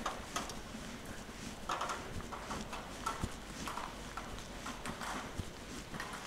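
Footsteps of a person walking on wet pavement: faint, irregular steps over a low background hiss.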